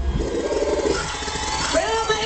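A woman's voice through a loud stage PA at a live dancehall show, a short rising-and-falling phrase followed by a long held note near the end. The beat's heavy bass thumps stop as it begins.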